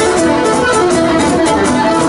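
Live Cretan syrtos dance music played loud: laouto lutes strumming a steady dance rhythm, with a bowed lyra melody over them.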